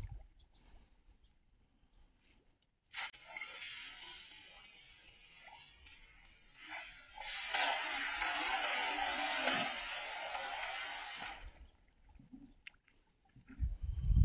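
Water splashing and pattering as a weighted cast net is thrown and comes down on the water, a spreading hiss that lasts about four seconds. A shorter burst of water pattering comes about three seconds in, and a low rumble near the end.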